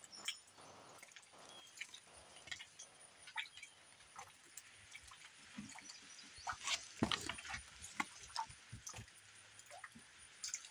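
Faint handling noise: a packaged rain poncho and its cardboard header card turned over in the hand, with scattered clicks and light taps that come a little thicker and louder in the second half.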